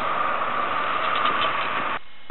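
Steady road traffic noise: a constant hum with a mid-pitched drone and no breaks.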